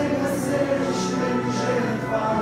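Singing of a Romanian church hymn with held instrumental accompaniment underneath; the sung words carry a few sharp 's'-like consonants.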